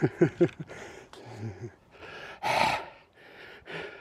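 A man laughing in a few short falling bursts, then loud gasping breaths as he catches his breath, out of breath from an exhausting run.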